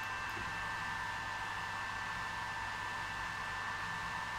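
Steady fan hiss from a TwoTrees TS2 diode laser engraver standing by during an autofocus macro, with a faint, even high whine.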